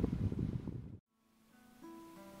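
Low wind rumble on the microphone for about a second, cut off by a moment of silence. Then an acoustic guitar starts softly, picking single notes that step from one held note to the next near the end.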